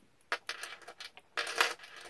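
Small metal costume jewelry clinking and rattling as it is handled and set down, in two short bursts, the louder one about a second and a half in.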